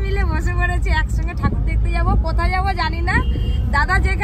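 Voices talking and laughing inside a car, over the steady low rumble of the running car.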